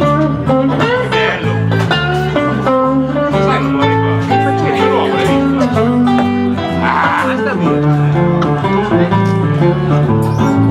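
Live blues played on guitars without singing: an acoustic guitar and a hollow-body electric guitar, with low notes stepping beneath.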